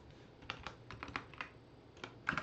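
A short run of keystrokes on a computer keyboard, about eight quick, faint key clicks in the middle of the stretch.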